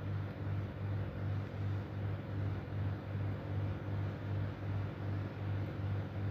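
A steady low hum that swells and fades about two to three times a second, over a faint even hiss.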